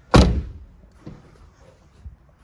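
Rear passenger door of a Maserati Ghibli saloon being shut: one loud, solid thud just after the start that dies away within half a second, followed by a much smaller knock about a second in.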